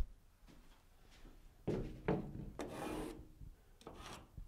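A yellow Stabila aluminium spirit level being set against a drywall wall: a few soft rubs and scrapes of the level sliding on the board, from about a second and a half in.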